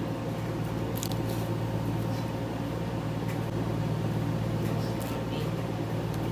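A steady low mechanical hum with a faint constant tone, with a few light clicks from handling things at the table.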